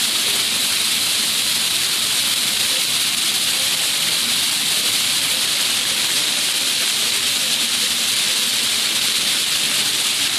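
Floor fountain: many water jets shooting up from nozzles in the pavement and splashing back down, a steady even rush of falling water.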